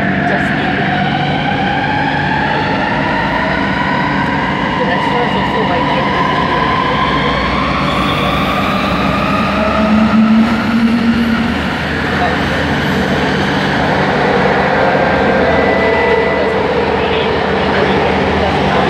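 A Bombardier Innovia ART 200 metro train's linear induction motors whining from inside the car, with several tones rising together in pitch as the train picks up speed over the first few seconds. A brief louder low hum comes about ten seconds in.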